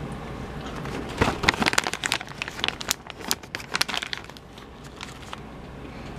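A plastic snack pouch crinkling as it is picked up and handled: a dense, irregular run of crackles for about three seconds starting a second in, thinning out after about four seconds.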